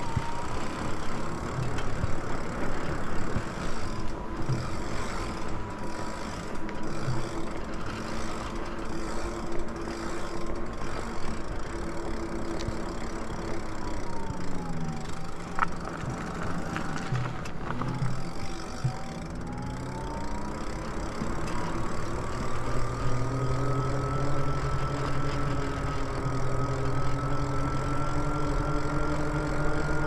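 Lyric Graffiti e-bike's electric motor whining while riding, over wind and tyre noise. The whine sinks in pitch about halfway through as the bike slows, then climbs steadily as it picks up speed again.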